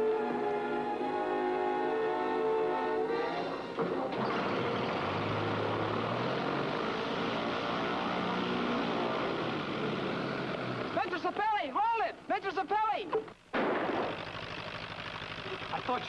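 Orchestral film score, then from about four seconds in a light aircraft's engine starts and runs steadily under the music. Wavering tones rise and fall for a couple of seconds near the end, then the sound cuts out briefly and the engine carries on, heard from inside the plane's cabin.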